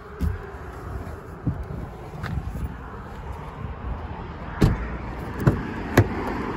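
Knocks and thumps of handling around a car's doors over a steady background rush, ending in a sharp click as the rear door's latch is opened.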